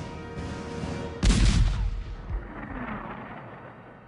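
M65 280 mm atomic cannon firing a single shot about a second in: a sudden loud boom that dies away into a low rumble, over background music.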